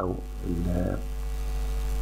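Steady electrical mains hum on the recording, with a short drawn-out vocal 'eh' from a man about half a second in.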